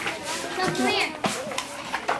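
Background chatter of young children and adults, with a child's high voice rising and falling about a second in and a single sharp knock just after it.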